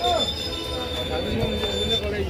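Passenger train's wheels and brakes squealing in one steady high-pitched note as the train slows to a stop at the platform, over a low rumble of the moving coach.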